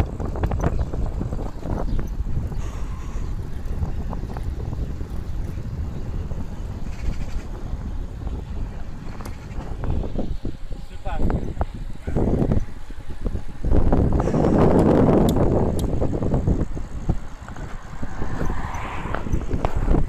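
Wind buffeting the microphone of a camera carried on a road bicycle descending at speed, a steady rushing that swells loudest about three quarters of the way through.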